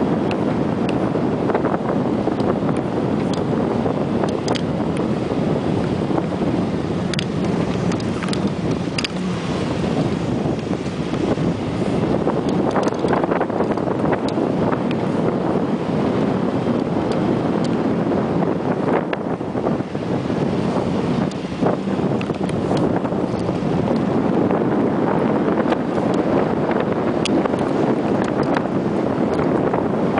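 Four-wheel-drive vehicle driving on a sandy off-road track: steady engine and tyre noise mixed with wind buffeting the microphone, with scattered light clicks.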